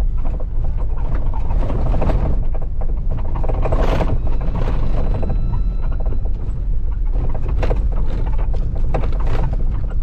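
A Jeep driving over a rough gravel road: a steady low rumble with frequent rattles, knocks and creaks from the vehicle as it goes over the bumps.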